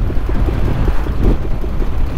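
The Flying Millyard's 5000 cc V-twin, built from Pratt & Whitney Wasp aircraft-engine cylinders, pulling along at very low revs, sounding as if it is ticking over, with a steady run of separate exhaust beats. Wind buffets the microphone.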